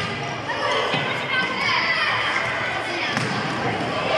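Echoing din of an indoor youth futsal match in a sports hall: many children's voices shouting and calling over one another, with thuds of the ball being kicked and bouncing on the wooden floor.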